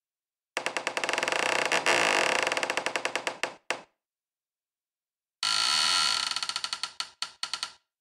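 Synthesised sound from Kyma sound-design software, played from an iPad keyboard: a rapid buzzing pulse train sounds twice, first for about three seconds and then for about two and a half. Each ends in a few broken stutters before cutting off.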